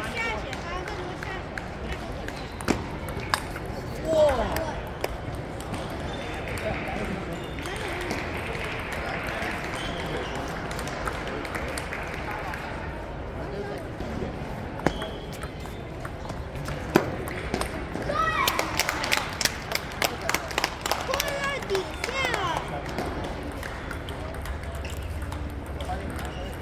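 Table tennis ball clicking off paddles and the table, a few single hits and then a quick run of hits in a rally near the end, over background chatter of voices.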